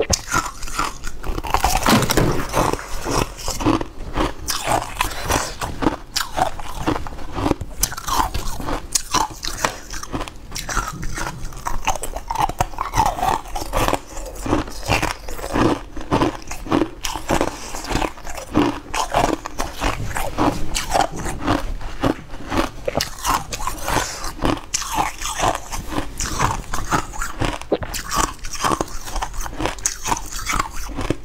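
Close-up biting and chewing of crunchy blue ice clumps: a steady run of crisp crunches, loudest about two seconds in.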